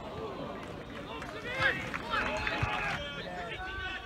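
Men's voices shouting across a football pitch during play, several calls overlapping, the loudest about one and a half seconds in.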